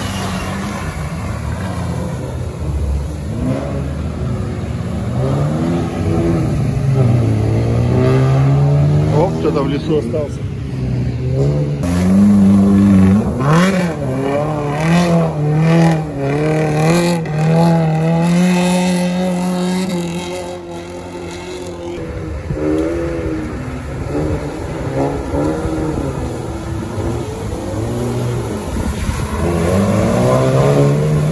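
Lada Niva 4x4 engines revving hard as the cars drive through deep mud. The engine pitch rises and falls again and again as the wheels spin and grip, most wildly about halfway through.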